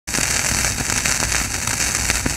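Surface noise of a shellac 78 rpm Victor record under the stylus: steady hiss with scattered crackles and clicks, with no music yet as the needle runs in the lead-in groove.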